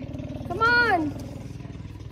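A single loud shout from a person's voice, about half a second long, rising and then falling in pitch. A steady low hum runs underneath.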